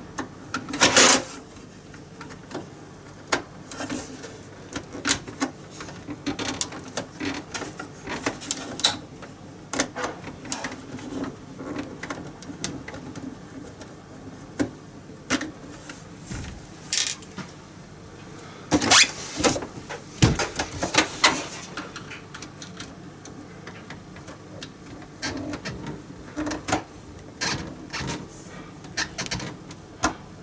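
Small screwdriver unscrewing screws from the plastic housing of an Epson EcoTank printer: scattered clicks, ticks and scrapes of the driver and screws against plastic, coming irregularly with a few louder clusters.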